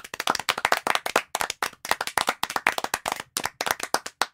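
Applause: hands clapping in a dense, uneven patter, with individual claps standing out.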